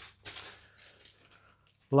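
A small plastic bag of LEGO pieces being picked up and handled. It opens with a short sharp clatter, then the plastic crinkles faintly and the loose bricks inside rattle.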